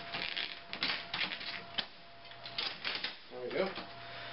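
Telescoping aluminium handle of an Abo Gear Beach Lugger beach cart being pulled up and locked, giving a string of quick metal clicks and rattles.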